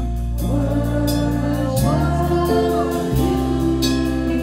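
Church praise team singing a gospel worship song, a male lead with female backing voices, over sustained accompaniment chords. The chord underneath changes about two seconds in and again about three seconds in.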